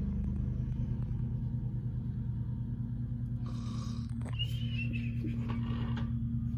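A steady low hum, with a brief rustle and a single light knock a little past halfway.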